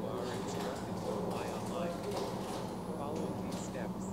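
A person's voice speaking over a steady low hum and background noise.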